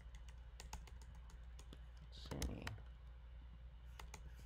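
Irregular clicking keystrokes on a computer keyboard as text is typed and deleted. A brief louder sound comes about halfway through, over a steady low hum.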